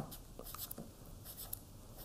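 Faint scratching of a marker writing on paper, with a few small ticks.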